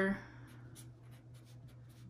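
Felt-tip marker writing on paper: a series of short, faint scratchy strokes.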